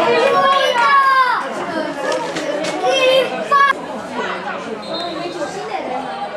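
Several voices shouting and calling out on a football pitch, loud and high-pitched in the first three seconds, then dying down to scattered calls.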